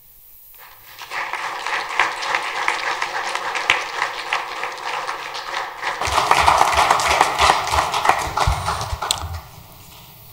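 Audience applauding, starting about a second in, growing louder around the middle and dying away near the end.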